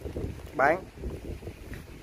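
A single spoken word about half a second in, over a steady low rumble of wind buffeting the microphone.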